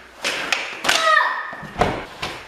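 Thuds and slaps of feet and bodies landing on foam floor mats during karate knife-defense practice, about four sharp impacts in two seconds.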